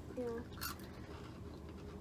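A single short spoken "yeah", then a quiet room with a faint, brief rustle about two-thirds of a second in.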